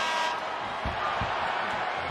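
Ice hockey arena crowd noise at the end of a game, a steady hubbub of the crowd, with a couple of dull low thumps about a second in.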